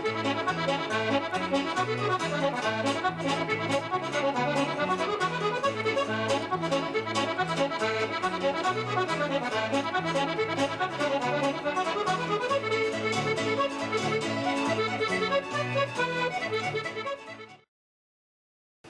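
Piano accordion leading a set of Scottish reels at a brisk tempo over a steady bouncing bass line, with band backing. The music stops about half a second before the end.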